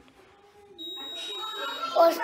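A single high-pitched electronic beep lasting about a second, starting a little under a second in after near silence.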